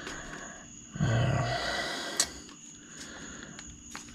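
Handling noise from a radio-controlled motorcycle being moved about in the hands: rubbing and knocking of its plastic and metal parts, with a sharp click about two seconds in and another near the end.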